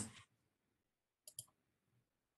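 Two quick clicks close together, about a second and a quarter in, over near silence: computer clicks made while moving the lecture slides on to the next slide.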